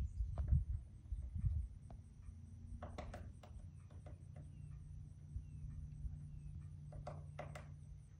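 Quiet outdoor ambience: a low rumble of wind on the microphone, strongest in the first two seconds, a few faint short chirps in the middle, and a few sharp clicks about three and seven seconds in.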